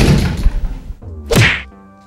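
A loud whack of a wall telephone's handset being slammed down onto its cradle, ringing on for about a second. A second short hit follows about a second and a half in.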